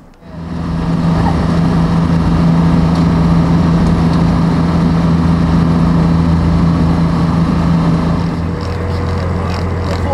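Boat engine running with a steady drone. Its tone shifts and it gets a little quieter near the end.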